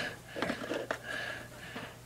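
Quiet room tone with a steady low hum, and a few faint clicks and rustles as a small brush and a tool are worked over a violin's top, brushing glue into a crack.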